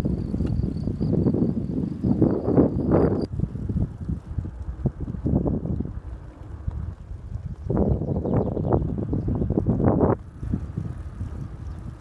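Wind buffeting the microphone of a camera riding on a moving touring bicycle, in gusts that swell and fade, with a calmer stretch from about four to seven seconds in and a sudden drop near the end.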